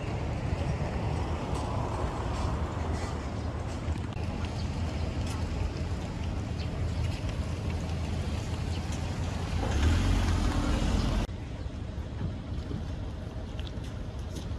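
Street ambience: a steady low rumble of road traffic that swells louder about ten seconds in, then cuts off suddenly.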